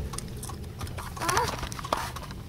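Steady low rumble of engine and road noise inside a vehicle cabin, with scattered short sharp clicks and a brief vocal sound partway through.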